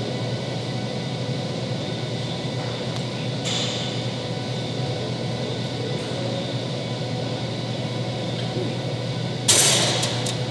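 Steady broad hiss of gym room noise, with a brief high hiss about three and a half seconds in and a short, louder rush of noise just before the end.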